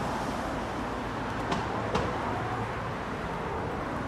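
Steady background road traffic noise, an even hum with no single vehicle standing out, and two faint ticks near the middle.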